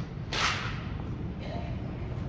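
An armed drill squad working in a gymnasium: one sharp burst about a third of a second in, ringing briefly in the hall, followed by a faint voice.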